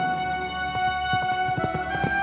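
Orchestral score holding sustained chords, with the hoofbeats of a galloping horse coming in under a second in.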